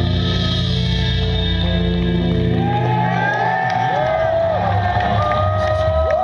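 Live band holding a sustained, effect-laden final chord on guitar, with the crowd starting to cheer about halfway through: whoops and whistles rising and falling over the ringing chord.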